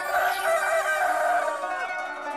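A long, wavering crow-like call, lasting nearly two seconds and falling away at the end, over plucked-string theme music in a Middle Eastern style.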